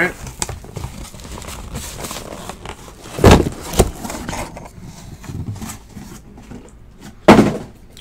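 Cardboard shipping case being handled and sealed card boxes lifted out and set down on a table: three sharp thuds, two close together about three seconds in and one near the end, with light cardboard rustling between.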